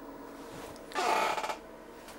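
A short breathy rush about a second in, like a person exhaling sharply through the nose, over a faint steady hum.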